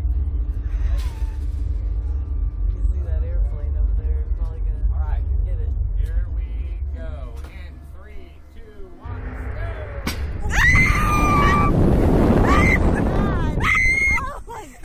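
Slingshot ride launching about ten seconds in: a low rumble with faint background music gives way to a sharp snap at the release. Then come loud rushing wind and two women screaming as they are flung upward.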